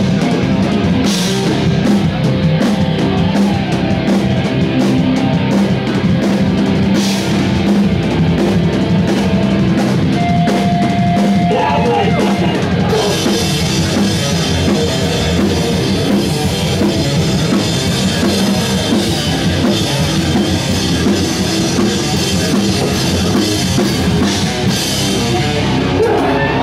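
Loud live heavy rock band playing, with the drum kit prominent and the sound filling a hall. About halfway through, the highs grow brighter and busier, with more cymbal.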